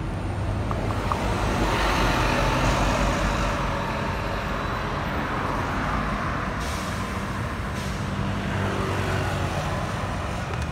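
Road traffic dominated by a heavy vehicle's engine running low and steady. A hiss swells about a second and a half in, is loudest around two to three seconds, and fades over the next few seconds.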